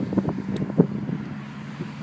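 A steady low mechanical hum with a few short knocks over it, the loudest a little under a second in.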